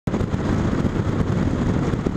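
Honda VTX1300R cruiser's V-twin engine running steadily at riding speed, mixed with heavy wind rush over the microphone.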